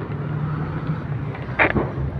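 A vehicle engine running with a steady low hum amid street traffic noise, and a short, sharp higher sound about a second and a half in.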